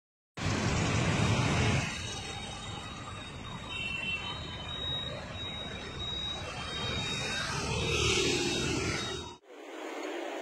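Road traffic noise at a busy junction: a steady rush of passing vehicles, louder with a low rumble for the first second and a half, cutting off abruptly near the end.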